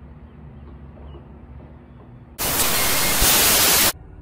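Low, steady background noise, then about two and a half seconds in a loud burst of static hiss that lasts about a second and a half and cuts off suddenly, like a TV-static edit effect.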